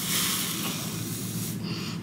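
Breath blown through a cotton pad soaked in micellar water held against the mouth: a long, steady, breathy hiss that fades about a second and a half in, as the pad foams up.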